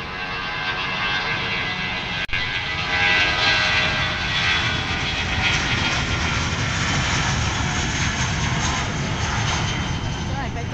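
Jet airliner's engines running on the runway: a steady rushing noise with a whine over it, growing louder about three seconds in and then holding. There is a brief dropout a little over two seconds in.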